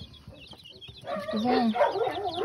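Chicks peeping softly, then a hen clucking from about a second in, louder.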